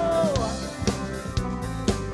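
Live band music led by a drum kit: a held note slides down and stops about half a second in, then snare and bass drum hits land about every half second over the bass.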